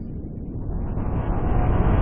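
Rumbling sound effect of an animated logo intro, swelling steadily louder as it builds toward the logo reveal.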